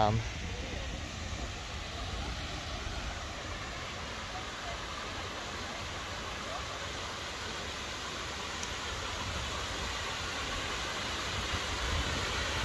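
Fountain water splashing steadily into a stone basin, an even hiss that grows a little louder near the end, over a low rumble.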